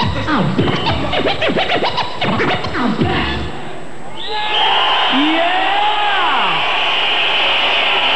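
Vinyl record scratched back and forth by hand on a turntable over a heavy bass beat, the rapid swooping strokes stopping abruptly about three and a half seconds in. An audience then cheers and shouts steadily.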